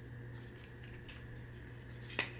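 Faint rustling and crinkling of a paper cat-shaped notepad being handled and folded, with a few light scrapes over a steady low hum.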